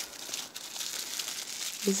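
Soft crinkling and rustling of a clear plastic cosmetic bag and the tissue paper under it as they are handled.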